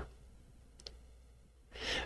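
A pause between spoken sentences: mostly quiet, with one faint click a little under a second in and a short, soft intake of breath near the end.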